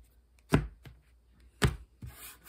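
Stacks of tarot cards set down on a hard tabletop as the deck is cut into piles: two sharp taps about a second apart, the first followed by a lighter one.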